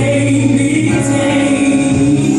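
Gospel song with a choir singing long held notes.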